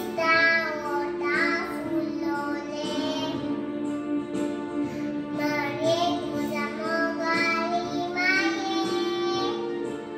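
A young girl singing a song over steady instrumental backing.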